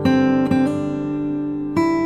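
Background music on acoustic guitar: sustained chords, with new chords struck at the start, about half a second in, and again near the end.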